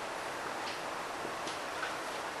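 Marker writing on a whiteboard: a few faint ticks and a short squeak over steady room hiss.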